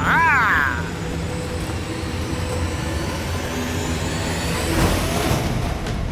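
Cartoon sound effects: a shrill creature cry that rises and falls in pitch in the first second, over a low steady rumble. About five seconds in, a short rising whoosh.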